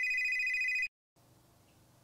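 An electronic telephone ring: a steady high tone with a slightly buzzy edge that lasts about a second and cuts off abruptly, followed by near silence.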